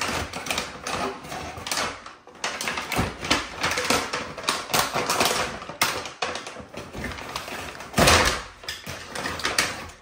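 Gift wrapping paper and plastic packaging being torn open and crinkled by hand: a dense, irregular run of crackles and rips, with one louder tear about eight seconds in.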